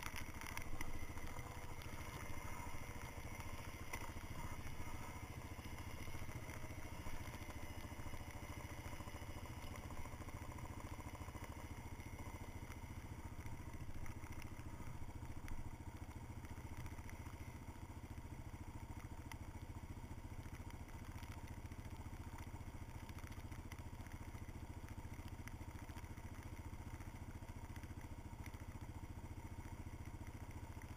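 A dirt bike engine idling steadily and fairly quietly. Its pitch wavers a little in the first few seconds, then holds even.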